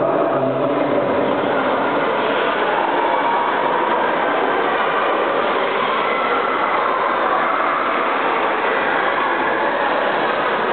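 Steady, echoing din of an indoor swimming pool hall during a race: many voices from the crowd on the pool deck blended with the splashing of swimmers.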